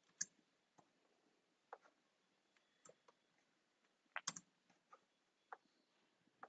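Faint, sparse clicks of a computer keyboard and mouse: single clicks spread out, with a quick double click a little past four seconds in as the loudest.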